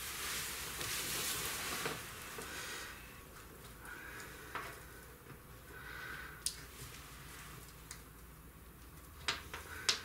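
Clothing rustling as someone reaches overhead, then scattered small clicks and taps from handling wires and a push-in solder-free connector.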